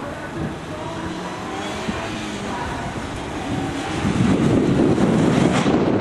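Distant Toyota Vitz SCP10's 1.0-litre four-cylinder engine revving up and down as it is driven hard round a gymkhana course. From about four seconds in, wind buffeting the microphone becomes the loudest sound.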